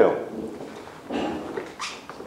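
The end of a man's spoken question, then two short, indistinct voice sounds, about a second in and near the end.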